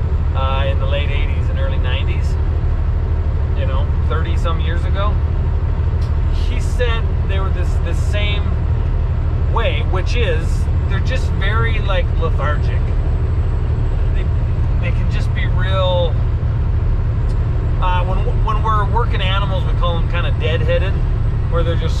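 Steady low drone of a semi-truck cab rolling at highway speed, with a man talking over it in bursts.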